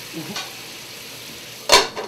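Halibut frying in lemon juice and white wine in a metal skillet, a steady sizzle. Near the end a metal lid clanks down onto the pan, sharp and ringing, the loudest sound.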